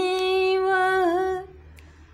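A woman singing a devotional bhajan unaccompanied, holding one long steady note. The note dips slightly and breaks off about a second and a half in, leaving a short quiet pause.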